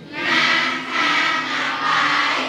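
A roomful of students' voices calling out together, many voices at once rather than one speaker, at about the level of the lecture around it.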